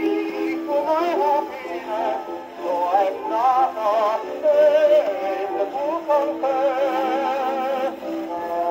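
A 1925 Grey Gull 78 rpm shellac record playing period popular music through an acoustic phonograph's reproducer. The sound is thin, with almost no bass, and the melody wavers with a strong vibrato.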